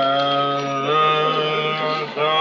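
A woman humming a slow tune in long held notes, stepping to a new note about a second in.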